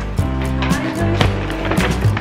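Background music with a steady beat, about two beats a second, over a deep sustained bass.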